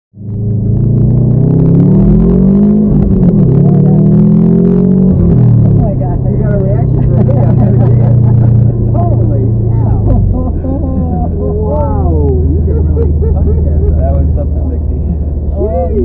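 Subaru WRX's turbocharged flat-four engine, heard inside the cabin, pulling hard under full acceleration: its note climbs, drops at a gear change about three seconds in, climbs again to a second shift about two seconds later, then settles into a steady drone that steps lower near ten seconds. Passengers laugh and talk over it.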